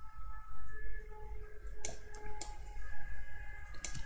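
A few sparse, sharp clicks from a computer keyboard and mouse, over a low steady background hum.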